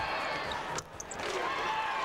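Basketball arena sound during a free throw: crowd noise and a basketball bouncing on the hardwood court. The sound drops out briefly just under a second in.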